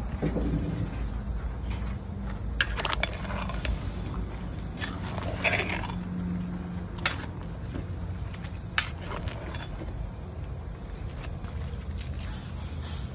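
Metal ladle knocking and scraping against a large metal cooking pot as noodles are stirred into the broth: a few sharp knocks spread out over a steady low rumble.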